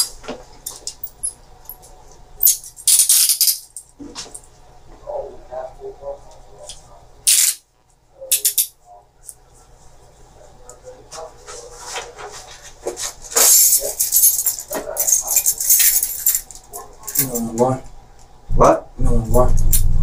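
Scattered rustling and clicking from a man moving about and handling things, with short stretches of low muttering or humming.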